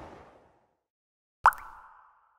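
Logo sound effects: a noisy swish fades out in the first half second, then after a second of silence comes a single sharp pop with a short ringing tone after it.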